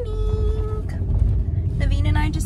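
Steady low rumble of road and engine noise inside a car's cabin.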